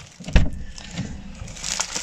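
Boxes being handled in plastic shopping bags: one sharp thump about a third of a second in, then soft rustling and knocking of the packaging.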